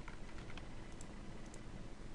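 Faint, scattered clicks of a computer mouse and keyboard, several in quick succession, over a low steady background hum.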